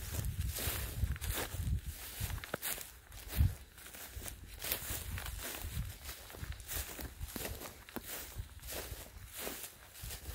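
Footsteps on dry grass at a steady walking pace, about two steps a second. A low rumble fills the first couple of seconds, and a single loud thump comes about three and a half seconds in.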